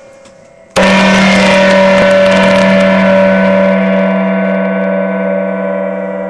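A loud musical chord struck once, about a second in, then left ringing and slowly fading.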